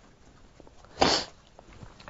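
A single short, sharp burst of breath noise from a person, about a second in and lasting a fraction of a second.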